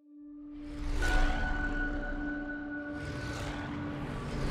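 Rumble of propeller fighter planes in flight, fading up and swelling loudest about one second in and again near three seconds, under a held, droning note of film score.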